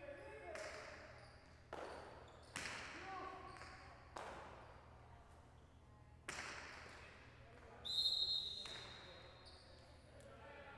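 A jai alai rally: the hard pelota cracks against the front wall and the cesta about five times, each hit echoing around the hall, the loudest near the end. A short high squeal comes with that last hit, and the play then stops.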